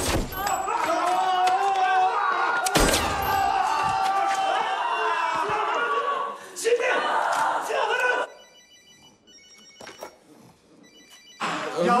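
Loud excited voices and commotion with a sharp bang about three seconds in, then a telephone ringing quietly in short repeated rings for about three seconds near the end.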